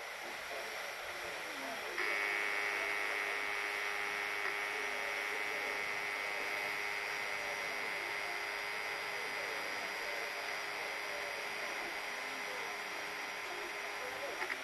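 Vintage vinyl field recording of a steam-hauled passenger carriage's interior, with faint voices over background noise. About two seconds in, a steady buzzing tone with many overtones starts abruptly and holds without a change in pitch.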